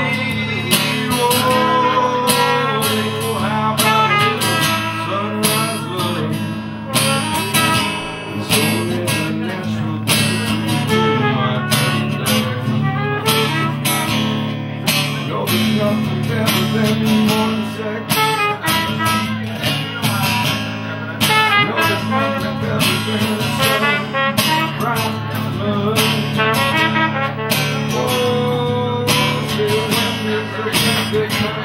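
A live band playing an instrumental break: an acoustic guitar strummed in a steady rhythm, with a horn playing a melody over it.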